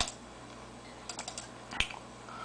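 Handling noise: a few light clicks, a quick cluster of them about a second in, then one sharper tap near the end.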